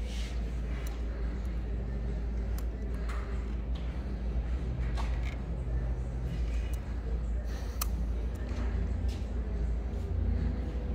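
Faint, scattered metallic clicks and handling noise from an allen key tightening the bolts of a CNC router's clamp mount, over a steady low hum.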